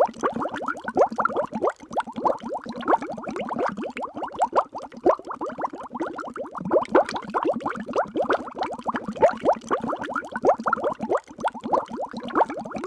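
A continuous bubbling, water-like sound: a rapid, dense stream of short rising plops, muffled, with little high end.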